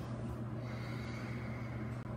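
A person breathing audibly while moving through a yoga vinyasa, over a steady low hum.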